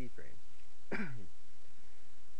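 A man clears his throat once, about a second in: a short, rough vocal sound that falls in pitch.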